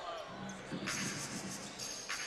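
A basketball being dribbled on a hardwood court, faint under the general noise of an arena.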